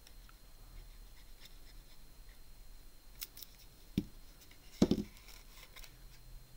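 Quiet handling of red cardstock while gluing and folding a small paper box, with a few faint clicks. A soft knock about four seconds in and a louder double knock near five seconds in, as the plastic liquid-glue bottle is set down on the wooden desk.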